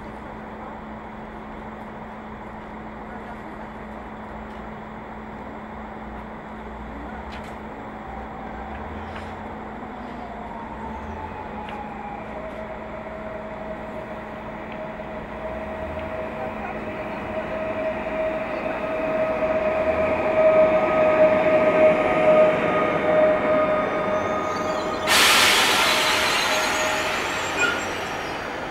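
Electric multiple unit approaching along a station platform. Its running noise grows steadily louder, with a steady high whine through the middle of the approach. A sudden loud hiss breaks in about three seconds before the end.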